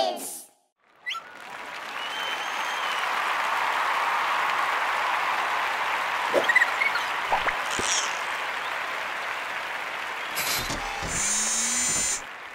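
Audience applauding steadily, with a short rising sound effect near the end.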